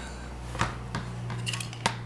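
Several short, sharp clicks and taps as a Daisy 499B BB gun's metal and wooden parts are handled and knocked against a workbench, over a low steady hum.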